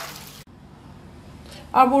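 Soaked urad dal and its water pouring into a mesh strainer: a short rushing splash that cuts off suddenly about half a second in, leaving a faint hiss.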